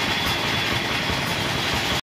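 A machine running steadily, with a thin high whine over an even drone.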